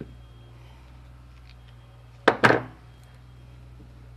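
A steady low hum with one short, sharp clack a little over two seconds in, from pliers being handled while wire ends are twisted at a workbench.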